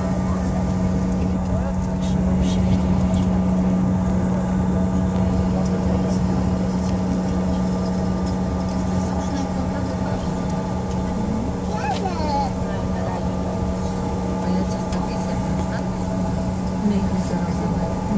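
Airliner engines heard from inside the passenger cabin: a steady, even hum with a strong low drone as the plane lines up on the runway for takeoff.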